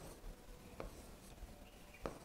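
Faint taps and rubbing of a hand-held pen writing on an interactive touchscreen board, with a couple of soft ticks, the clearest at the end.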